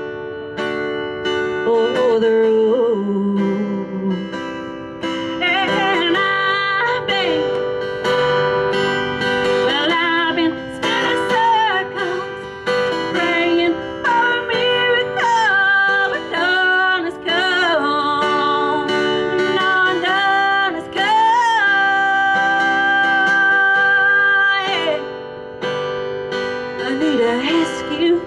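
A woman singing a country song live, accompanying herself on strummed acoustic guitar. She holds one long note about three-quarters of the way through.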